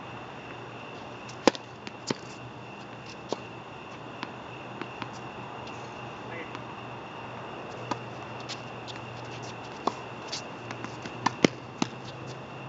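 Tennis rally: sharp pops of the ball struck by rackets and bouncing on the hard court, about a dozen irregularly spaced, loudest about a second and a half in and again near the end, over a steady low hum.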